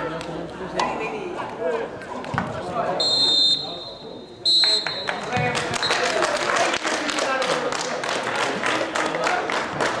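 Voices of players and spectators at an outdoor football match, with two short blasts of a referee's whistle about three and four and a half seconds in, and a run of sharp taps in the second half.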